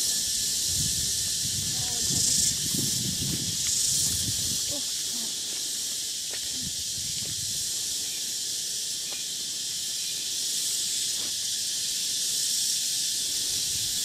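A steady, high-pitched insect drone of a tropical forest chorus, unbroken throughout. Some low rumbling and knocks sound under it during the first few seconds.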